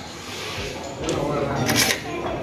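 Indistinct talking from people's voices, with no clear words, and a brief hiss or clatter near the end.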